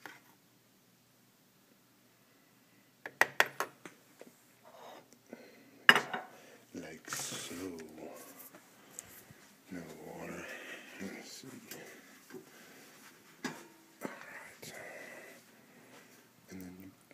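Kitchenware being handled: a quick run of small clicks about three seconds in, then a sharp clink about six seconds in, followed by a short hiss and more scattered clatter and rustling.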